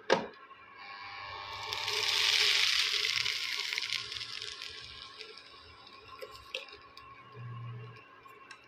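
Sago khichdi being stirred in an aluminium kadhai: a sharp knock of the spatula against the pan, then a hiss from the pan that swells and fades over about four seconds.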